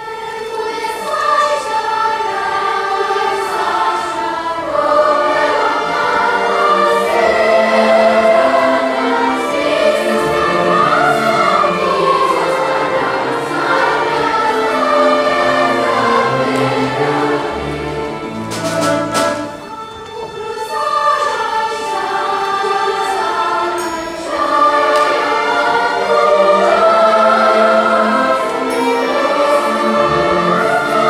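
A large children's choir singing with orchestral accompaniment. The music briefly thins about two-thirds of the way through, then the full choir comes back in.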